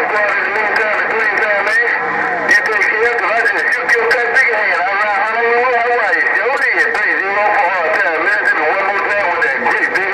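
Voices of distant stations coming in over a President HR2510 radio's speaker on 27.085 MHz (CB channel 11), sounding thin and narrow, with a hiss of static, and too garbled to make out.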